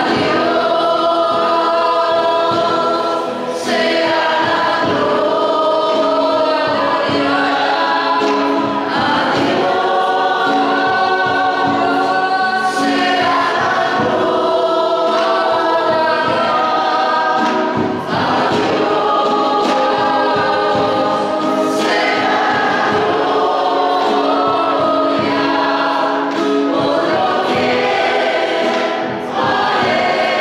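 A choir singing a worship hymn, phrase after phrase, with short breaks between phrases.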